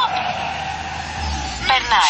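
Car sound effect in a radio commercial: a steady rushing tyre noise, with a low rumble coming in just past the middle, then a voice near the end.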